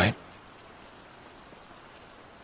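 Steady rain falling, a faint even hiss with light scattered drop ticks.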